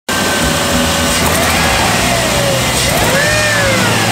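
2001 Jeep Grand Cherokee's 4.7-litre V8 running, a steady low hum with a higher tone that rises and falls twice over it.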